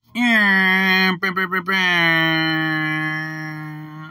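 A man's voice sung as one long held note with no words: it swoops in, breaks into a few quick stutters a little over a second in, then holds steady and fades toward the end.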